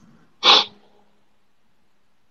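A woman's single short, loud sneeze about half a second in.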